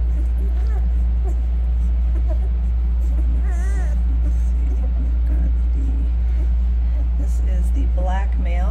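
One-week-old puppies nursing, making small squeaks and grunts, with one short wavering whimper about three and a half seconds in, over a loud steady low hum.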